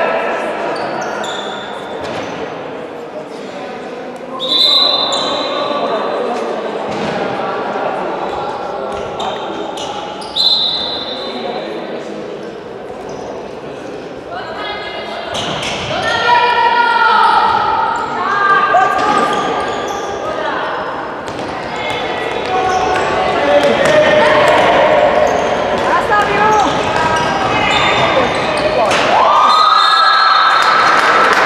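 Handball match sounds echoing in a large sports hall: a handball bouncing on the wooden court, with players' and spectators' voices shouting more and more from about halfway on. A referee's whistle gives short blasts at the start, around four and ten seconds in, and again at the very end.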